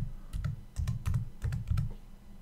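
Typing on a computer keyboard: a quick run of about ten keystrokes, each a short click with a dull thud under it, as a class name is typed into a code editor.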